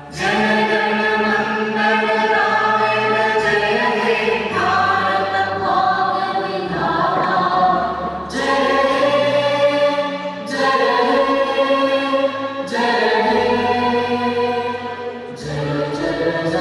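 A national anthem playing, sung by a choir with accompaniment: sustained chords that change every second or two, with a fuller phrase coming in about halfway through.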